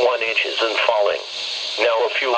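A computer-synthesized announcer voice reading a weather observation report, heard through a Midland weather radio's small speaker. It pauses briefly a little after a second in, then speaks again.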